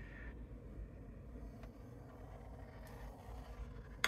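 Quiet room tone: a steady low hum with a few faint, thin ticks and a sharper click at the very end.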